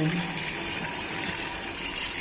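Tap water running steadily from a hose into a top-loading washing machine drum, pouring onto clothes and splashing into the water already filling the tub.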